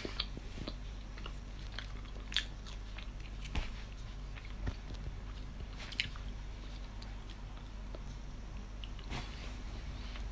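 A person chewing a piece of chocolate with the mouth closed, with a few soft mouth clicks spaced a second or more apart over a faint steady low hum.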